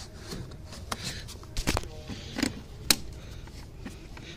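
A few short plastic clicks and knocks from the brake booster vacuum hose's quick-connect fitting as it is squeezed and pulled off. The sharpest click comes near the end.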